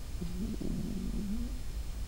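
A man's low, closed-mouth hum, a drawn-out "mmm" of hesitation lasting about a second and a half and wavering slightly in pitch.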